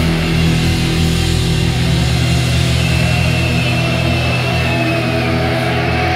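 A heavy metal band playing live, with electric guitars and bass guitar holding long, sustained notes.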